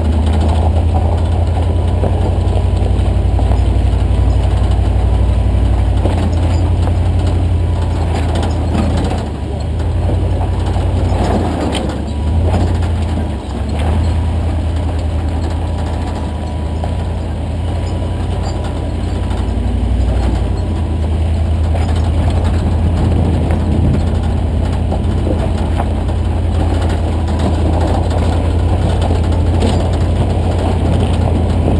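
Jeep Honcho pickup's engine running at low revs with a steady deep rumble as the truck crawls up a steep, loose-rock trail, dipping briefly a few times near the middle.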